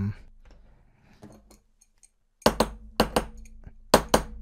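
A metal wrench striking a metal hardware-wallet protective case to test how sturdy it is: after some faint handling clicks, about five sharp metallic knocks starting about two and a half seconds in.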